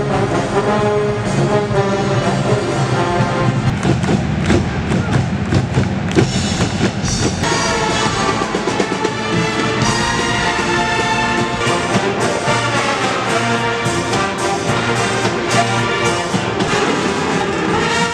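A large university brass band playing live and loud. Trombones and trumpets carry the music over a drum kit that keeps a steady beat of strikes.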